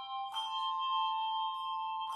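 Handbell choir playing a slow piece: a chord of several bells is struck about a third of a second in and left ringing, over the fading ring of the one before.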